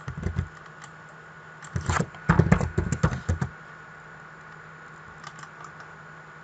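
Computer keyboard typing in short runs of keystrokes, heaviest from about two to three and a half seconds in, with a few lone taps near the end.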